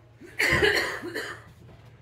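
A person coughing: one loud cough with a shorter second one just after it.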